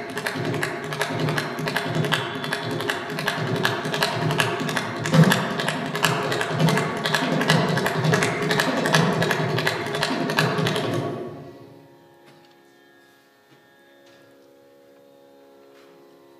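Mridangam played as a rapid, unbroken run of strokes in a Carnatic rhythmic pattern, with a steady pitched drone beneath. The drumming stops about eleven seconds in, leaving only the faint drone.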